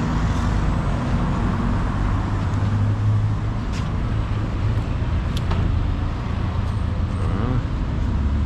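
A steady low motor hum under general outdoor noise, with two faint sharp clicks about four and five and a half seconds in.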